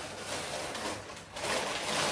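Paper takeaway bag rustling and crinkling as it is handled and opened, louder in the second half.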